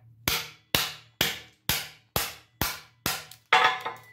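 Steel hammer striking the spine of a knife blade to drive its edge into a wooden board, in an edge impact test: eight sharp strikes at about two a second, each ringing briefly, the last one the loudest.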